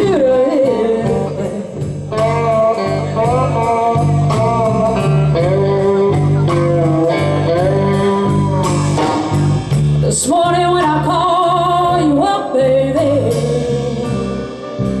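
Live blues band: a woman singing, her voice wavering with vibrato on held notes, over electric guitars and a drum kit keeping a steady beat.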